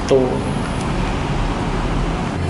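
Steady background rumble with a low hum, fairly loud and unchanging. A man's voice ends a word at the very start.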